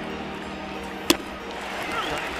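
Ballpark crowd noise under a steady low hum, with a single sharp crack about a second in as a pitched baseball reaches home plate.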